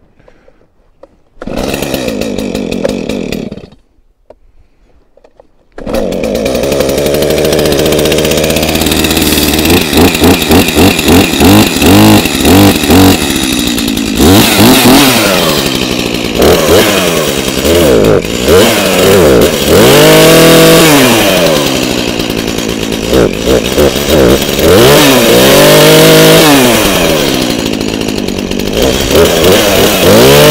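Two-stroke Stihl chainsaw: it runs for about two seconds and stops, then starts again about six seconds in. After a run of quick throttle blips, it revs up and down as it cuts a white pine log, its pitch dropping each time the chain bites into the wood.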